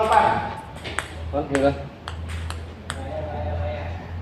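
Table tennis ball bouncing on the table and bats between points: about five sharp, unevenly spaced clicks, with men talking briefly in between.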